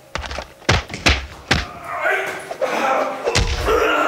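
A run of heavy thuds from a staged fist fight: several in quick succession in the first second and a half, and another about three and a half seconds in. A voice strains or calls out in between.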